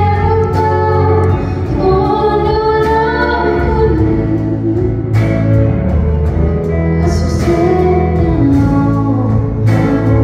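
A female vocalist singing live, backed by a band with electric and acoustic guitars and a drum kit.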